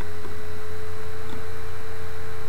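Steady electrical hum on the recording, with a faint steady higher whine running through it.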